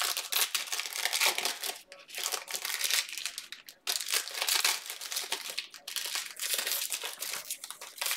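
Foil trading-card pack wrappers crinkling and tearing as they are ripped open and handled, in a run of short, crisp rustles with brief pauses.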